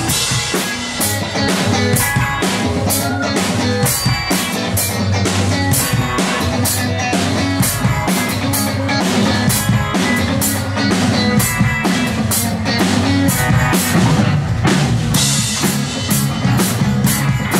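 A live rock band plays through a small club PA: a drum kit keeps a steady, driving beat of sharp hits several times a second over electric guitars and bass.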